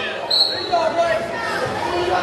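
Spectators' voices calling out in a gymnasium, with a brief high squeak about a third of a second in.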